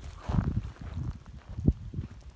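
Wind buffeting the microphone: irregular low rumbling that surges and drops, with one brief sharper thump near the end.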